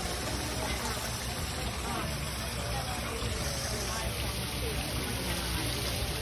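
Water running steadily over a small rock waterfall into a pond, with indistinct voices in the background.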